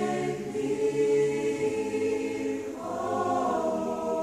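Mixed choir singing a cappella, holding long sustained chords, with a change to a higher chord about three seconds in.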